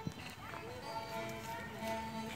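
Live music from a small band playing outdoors, with held notes sounding steadily, and people's voices mixed in.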